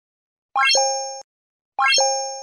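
Synthetic pop-and-chime sound effect from an animated like-and-subscribe end screen, heard twice about a second apart: each is a quick upward-stepping chirp that settles into a short ringing chime and fades.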